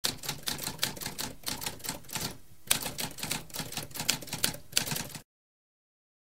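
Typewriter typing: a quick run of key strikes with a brief pause about halfway through, stopping a little after five seconds in.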